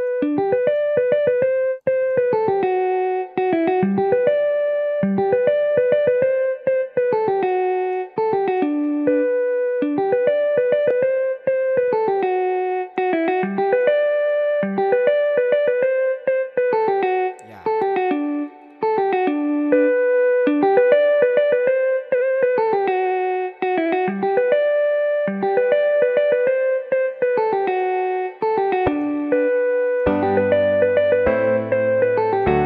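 A short chord progression on a keys-like software instrument, plucked notes with a sharp attack that die away, looping over and over with no drums or bass.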